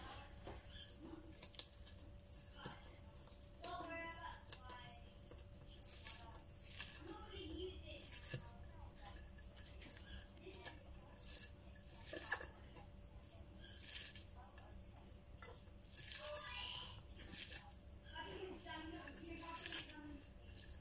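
Fingers squeezing and rubbing chopped red onion and dried red chillies together against a plate: faint, intermittent rustling and squishing. Faint voices are heard now and then behind it.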